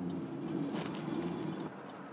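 Pickup truck engine running, heard from inside the cab as a steady low hum over road and cabin noise; the hum drops away shortly before the end.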